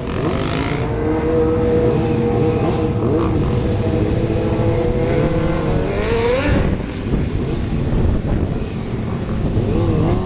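Suzuki GSX-R sportbike's inline-four engine running under the rider, holding a steady note, then revving up about six seconds in and dropping off sharply.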